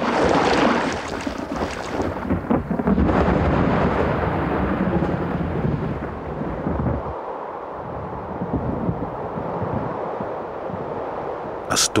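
Thunder: a sudden loud crack at the start, then a long rolling rumble that slowly fades.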